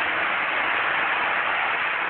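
Steady static-like hiss with no other sound.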